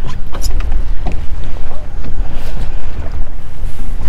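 Wind buffeting the camera microphone: a loud, steady, uneven low rumble, with a few light clicks about half a second in.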